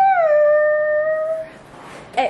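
A woman's drawn-out excited 'woooo' that slides up in pitch and is then held for about a second and a half before fading.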